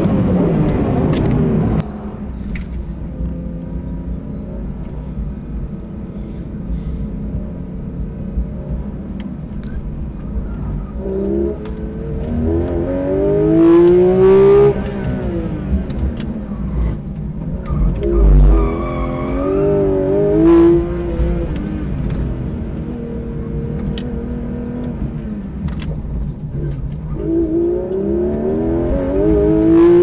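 Porsche 911 GT3 RS's naturally aspirated flat-six on a hard track lap, revving high through the gears and dropping back under braking. About two seconds in, the engine sound becomes sharply quieter and duller. It then rises in pitch in three long sweeps, about eleven seconds in, near twenty seconds and near the end.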